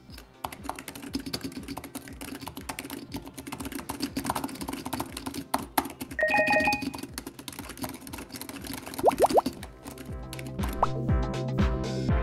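Typing on a Razer Huntsman V2 TKL keyboard with Gen 2 linear optical switches, factory lubed and sound-dampened: a quick, irregular run of soft key clicks over background music. A short electronic chime sounds about halfway through, and from about ten seconds the music, with a steady beat, grows louder.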